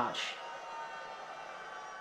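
Optrel e3000X powered air-purifying respirator's battery blower fan running at its medium speed setting: a steady hum made of several fixed tones.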